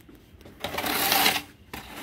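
A wooden straightedge scraped over a gritty sand-cement mortar layer while levelling a roof's waterproofing base. It makes a rasping scrape that comes in two strokes, the first starting about half a second in and the second starting near the end.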